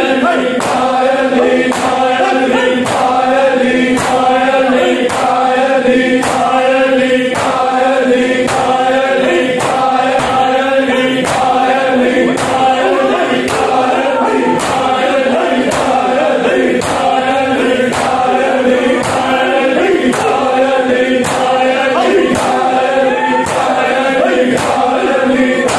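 Shia noha lament chanted by a group of men in unison, with the mourners' hands striking their bare chests (matam) in a steady beat of about one strike every three-quarters of a second, keeping time with the chant.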